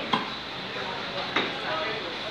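Busy fish-market background of voices and handling noise, with two sharp knocks about a second apart.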